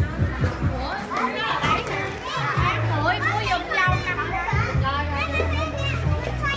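Children's voices, chattering and calling out, with background music and a steady low hum underneath.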